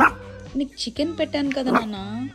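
Maltese dog making short yips and whines while begging for food, starting with a sharp yip right at the start.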